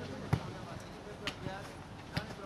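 A football being kicked on an artificial pitch: one sharp thud about a third of a second in, then two fainter knocks about a second later.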